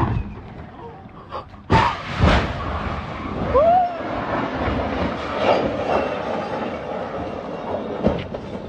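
A Tesla Model S rushing past at speed, then about two seconds in a loud crash with a second bang half a second later as it comes down and hits a parked car. Onlookers' voices and a brief rising-and-falling cry follow.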